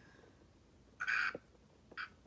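A person's short breathy huff, like a quick exhale of laughter, about a second in, against quiet room tone.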